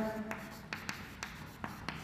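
Chalk writing on a chalkboard: a run of short, sharp taps and scratches as the chalk forms letters, several a second.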